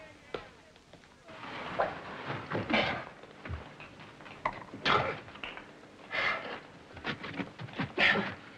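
A caver clambering through a rock passage: irregular scuffs and scrapes against the rock mixed with his effortful breathing, in a series of separate bursts.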